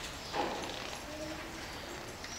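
A pause between spoken lines: quiet room noise picked up by a microphone, with one brief soft sound about a third of a second in.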